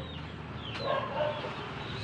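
A chicken clucking in the background, with one drawn-out call about a second in.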